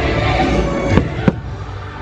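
Aerial fireworks shells bursting, with two sharp bangs about a second in, close together, over the fireworks show's music soundtrack.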